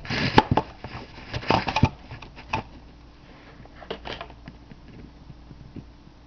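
Handling noise of a multimeter and its test probes being held against a sensor's connector pins: a quick run of sharp clicks, taps and rustles in the first two seconds, a few more about four seconds in, then quieter.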